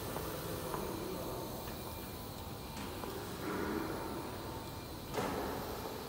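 Factory hall ambience: a steady low rumble with faint steady whine tones, and a single knock about five seconds in.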